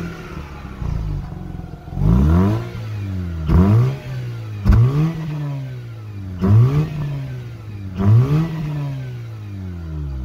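2006 Mazda RX-8's twin-rotor rotary engine, heard close at the exhaust tip, revved from idle in five quick blips of the throttle. Each blip rises sharply in pitch and falls straight back to idle, about every second and a half.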